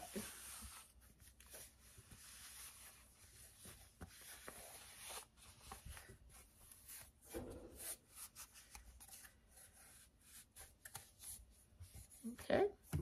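Faint rubbing and rustling of a sticky lint roller worked over a polyester sock, with a few small clicks and crinkles of handling.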